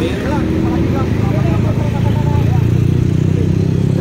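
Motorcycle engine running close by, a deep steady rumble that grows louder about a second and a half in, over the hum of road traffic.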